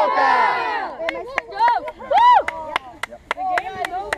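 A boys' youth soccer team shouting a huddle-break cheer together. About a second in, the shout gives way to scattered sharp hand claps and single voices calling out.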